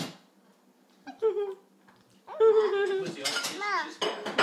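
A young child's wordless, high-pitched vocalising: a short sound about a second in, then a longer drawn-out call whose pitch wavers and falls over the last half. A light clink of cutlery at the start.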